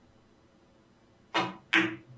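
Carom billiards shot: a sharp click as the cue tip strikes the cue ball, then a moment later a second, louder clack as the cue ball hits the yellow object ball.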